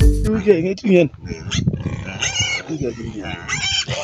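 Music cuts off just after the start, followed by livestock calling: a run of bending, pitched calls, with a few higher, brighter ones, alongside a voice.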